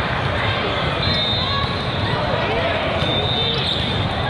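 Hubbub of many voices echoing through a large hall, with volleyballs repeatedly thudding off the floor on the courts.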